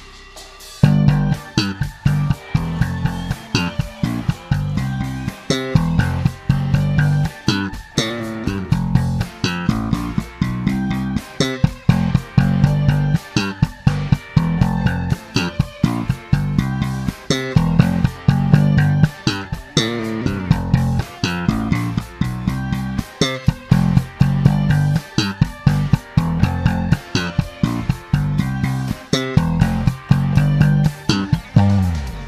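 Fender Jazz Bass with Custom Shop '60s pickups, played through a TC Electronic BH500 head, playing a driving bass line along with a full-band recording of the song, which comes in about a second in.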